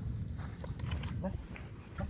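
A man's short, quiet voice sounds and a yellow Labrador puppy's small vocal sounds over a steady low rumble.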